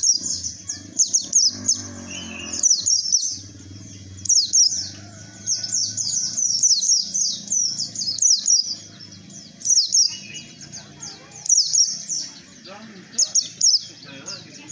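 A white-eye (pleci) singing in bursts of rapid, high-pitched twittering, each made of quick downward-sliding notes, with short pauses between the bursts.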